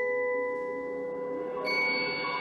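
A front ensemble of marimbas and vibraphones playing: a struck chord rings on steadily, and a new chord is struck about a second and a half in.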